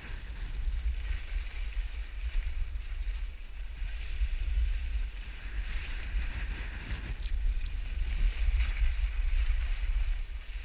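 Wind buffeting the microphone in a heavy low rumble, over the hiss and scrape of skis running across snow that swells and fades with the turns.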